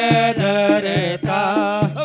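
Devotional Hindu aarti music to Shiva: a wavering melodic line over a steady percussion beat of about three strikes a second.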